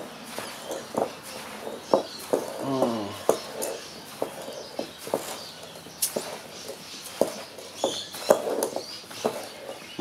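Hands stirring a mix of sand, perlite and polystyrene beads in a glass bowl: irregular clicks and gritty scrapes of the grains against the glass. A short pitched voice-like sound comes about three seconds in.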